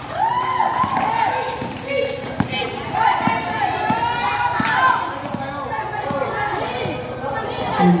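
A basketball being dribbled on a concrete court, a run of sharp bounces around the middle, under continual high-pitched children's shouts and calls.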